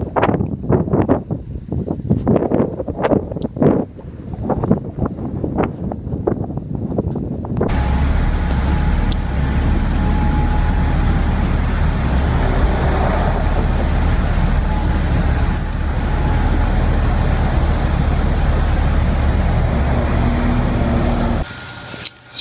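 Gusts of wind buffeting the microphone, then, after a sudden cut about eight seconds in, the steady rush and low rumble of a car driving along with a window open.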